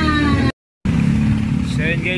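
Music with a held sung note cut off short, a brief dead gap at an edit, then outdoor street noise: a steady low engine rumble from road traffic.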